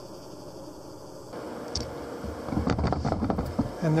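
A faint steady hum, then about a second and a half of low rumbling and knocks from a handheld camera being moved.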